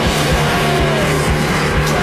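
Rock band's instrumental passage: loud distorted guitars with some sliding notes over a steady drum beat.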